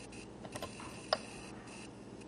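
Quiet, scattered clicks from working an audiometer's controls, a few light taps with one sharper click about a second in, as the next test tone is set and presented to the earphones.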